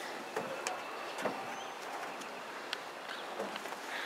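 Quiet outdoor background with a few faint, short clicks and a brief high chirp about a second and a half in.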